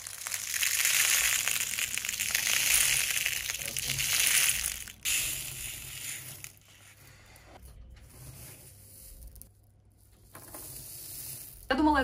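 Hundreds of small seed beads and plastic letter beads pouring out of a plastic compartment organizer box onto a fabric t-shirt, a dense rushing rattle for about five seconds that stops abruptly. After that, quieter rustling and clicking of the spilled beads being spread by hand.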